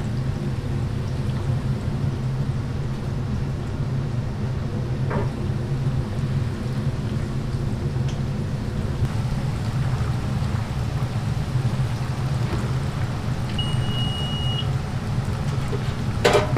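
Breaded croquettes deep-frying in a commercial fryer, the oil sizzling steadily over a constant low hum. A short high beep sounds about two seconds before the end.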